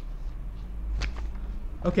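A single sharp click about a second in, over a steady low electrical hum.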